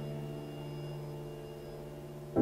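A musical tone with several steady overtones dying away slowly, the tail of the piece just played.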